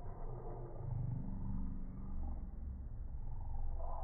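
A domestic cat's purr played back in slow motion, lowered into a deep, steady rumble.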